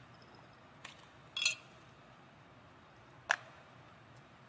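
Quiet handling of small plastic lab items, a centrifuge tube and a pH test strip: a light click about a second in, a brief scraping rattle about half a second later, and a sharp click about three and a quarter seconds in.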